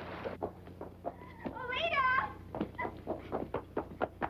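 A short, high-pitched vocal exclamation that rises and falls, about halfway through, among scattered light taps and clicks.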